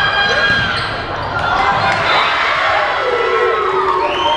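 Volleyball rally on a hardwood gym floor: athletic shoes squeaking as players move, over players' calls and spectators' voices.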